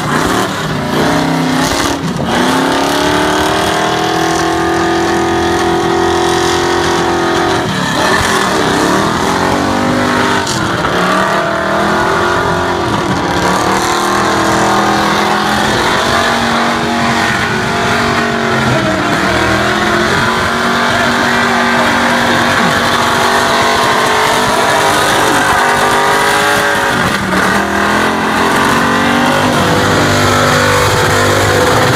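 Competition burnout car's engine held at high revs while its rear tyres spin on the pad. The revs drop and climb again several times.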